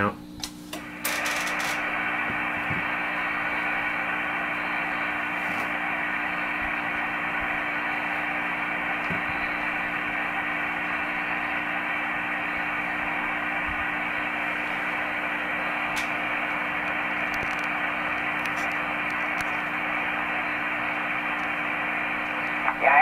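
Receiver audio from a Yaesu FT-225RD 2 m transceiver's speaker: a steady, even hiss cut off above and below like a voice channel, with a low steady hum underneath. It starts about a second in, after a couple of short clicks.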